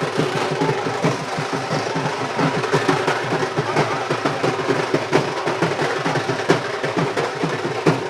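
A traditional Odia paika baja drum band playing a fast, continuous roll of drum strokes.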